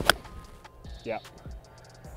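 A forged Cobra King CB iron swishing down and striking a golf ball off a practice mat: one sharp, crisp click just after the start, the loudest sound here.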